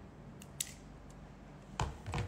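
A few short sharp clicks from small objects being handled, then two louder snaps near the end.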